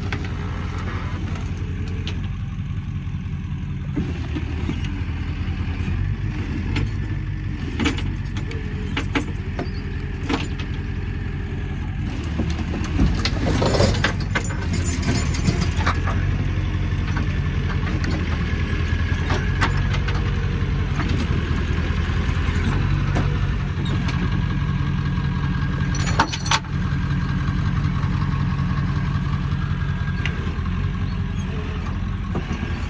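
A flatbed tow truck's engine idling steadily throughout, with a few sharp knocks and clanks over it, the loudest at about 13–14 seconds and 26 seconds in.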